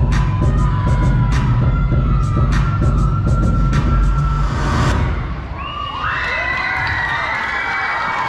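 Dance music with a heavy bass beat plays over the PA for about five seconds and then stops, and the audience cheers and shouts, with high, young-sounding voices.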